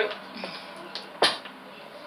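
A single sharp knock a little over a second in, as the mannequin head carrying the wet wig is set down.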